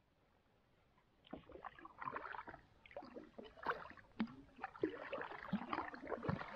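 Kayak paddling close to the water: quiet for about a second, then a busy, irregular run of splashes, drips and water slapping as the paddle blades dip and the hull moves.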